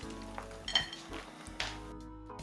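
Soft background music, with a few faint light ticks of chopped peanuts being sprinkled by hand onto a salad.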